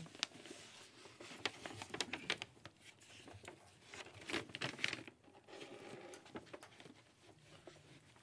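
Quiet meeting room with scattered soft clicks and rustling as a group of people move up to the front.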